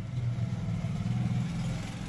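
A low, buzzing motor hum that swells about half a second in and fades near the end.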